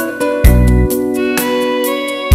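Instrumental backing-track music: sustained string and keyboard chords over a steady beat, with a heavy bass drum hit about half a second in.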